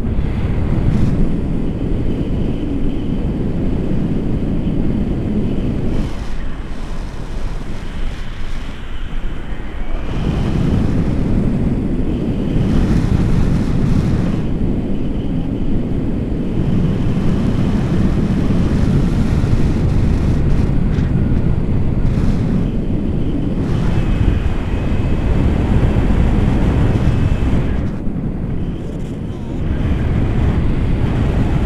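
Wind from a paraglider's flight buffeting an action camera's microphone as a steady, low rumbling rush. It eases off for a few seconds about a quarter of the way in, then picks up again.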